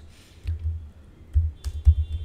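A few keystrokes on a laptop keyboard: scattered clicks in the second half, along with dull low thumps.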